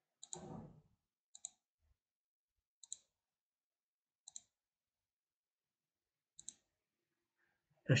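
Computer mouse button clicking five times, spaced one to two seconds apart, each click a quick press-and-release double tick. The clicks are faint, and they add areas to a magic-wand selection in a photo editor.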